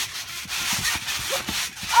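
Trampoline mat being bounced, with a steady rubbing, rustling hiss and scattered soft thumps as a yoga ball is launched off it.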